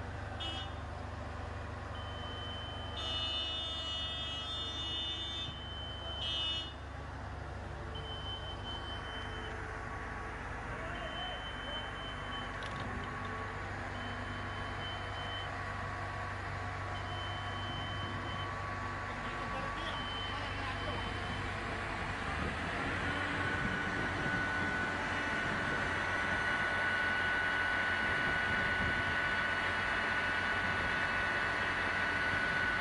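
A heavy vehicle's engine running with a backup-warning beeper: short high beeps, each about a second long, repeating roughly every three seconds. About two-thirds of the way through a steady higher whine comes in and the sound grows a little louder.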